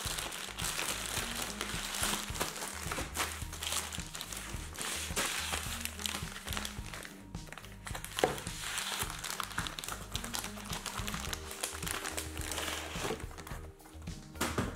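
Plastic packaging crinkling and rustling as hands unwrap a grey poly mailer bag and an inflated air-column wrap. Background music with a low bass line plays under it.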